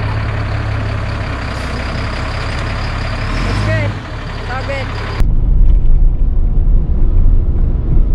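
A motorhome's engine runs steadily close by, with a few short squeaks a few seconds in. Just past the middle it cuts to a louder, gusty rumble of wind and road noise from a vehicle on the move.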